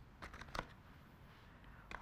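A few light clicks and taps about half a second in as metal scissors are handled in a cardboard gift box, then faint room tone.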